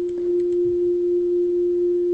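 A steady electronic pure tone at one pitch, the output of a Pure Data delay-line pitch shifter whose two crossfading transposers are summed. It gets louder just after the start, and a few faint clicks sound in the first half second.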